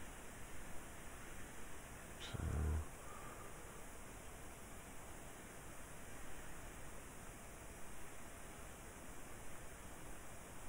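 Faint steady hiss of microphone room tone, with one brief low vocal sound about two and a half seconds in.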